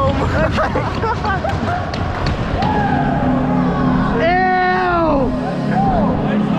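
Hockey players shouting and whooping in celebration of a goal. Background music comes in about halfway through, and near the end there is one long, loud yell that falls in pitch.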